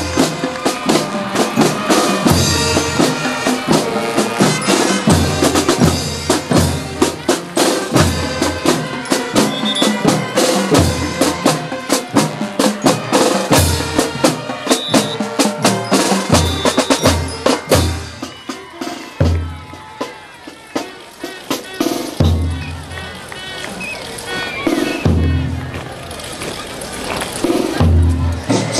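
School marching band's drum line, with snare drums, bass drums and cymbals, playing a marching cadence. The drumming thins out about two-thirds of the way through, leaving a few spaced bass-drum beats near the end.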